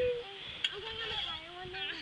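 Girls' voices, low and indistinct: a drawn-out vocal sound trailing off just after the start, then soft murmuring and wavering vocal sounds.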